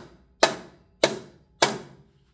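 Steel-headed hammer striking the warped flange of a Triumph TR6 timing chain cover, three sharp blows at a steady pace of just under two a second, each ringing briefly. It is knocking the high side of the flange down to flatten it so the cover won't leak.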